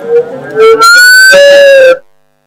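Microphone feedback howl through the PA: loud sustained tones, one low and one higher, that waver slightly in pitch and cut off suddenly at the end.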